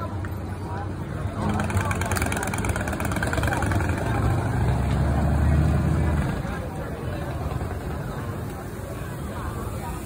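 A large motor vehicle's engine rumbling in the street, growing louder to a peak about five to six seconds in and then fading, under the mixed talk of people nearby.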